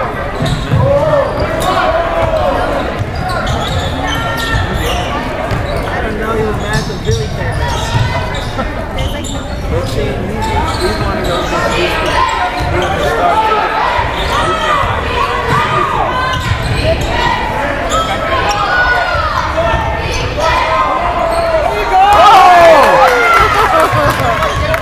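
A basketball being dribbled and bouncing on a hardwood gym floor, with players' sneakers squeaking, echoing in a large gymnasium. Spectator voices chatter under it, and it gets louder near the end.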